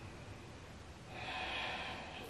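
A woman's soft, audible breath drawn in, starting about a second in and lasting just under a second, faint against quiet room tone.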